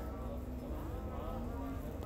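Domestic pigeons cooing softly in rooftop lofts over a steady low rumble.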